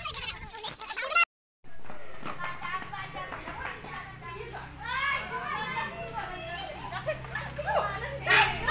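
Children's voices chattering and calling out in a group, over a steady low hum. The sound drops out briefly about a second and a half in.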